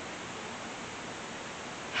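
Steady, even hiss of background noise with no other sound: room tone and recording noise in a pause between words.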